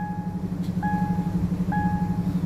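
A car engine idling steadily with a low hum, while an electronic warning chime beeps three times, a little more often than once a second.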